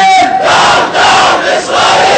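Demonstrators chanting in call and response: a single voice holds a long shouted call, then the crowd answers with three loud shouts in unison.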